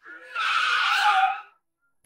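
A woman's shrill battle cry, held for about a second and a half and dropping slightly in pitch before it stops.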